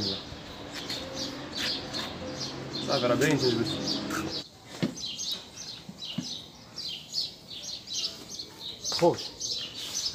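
Small birds chirping repeatedly in quick, short notes, over a low steady hum that cuts off abruptly about four and a half seconds in. A voice is heard briefly in the background.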